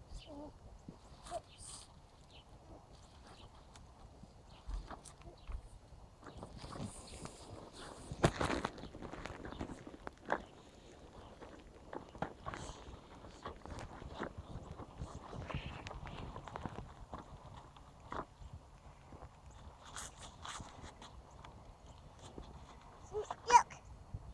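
Intermittent crunching of snow with small plastic knocks and scrapes as a toy excavator is pushed and dug through the snow, busiest about eight to ten seconds in. A child's short vocal sound comes just before the end.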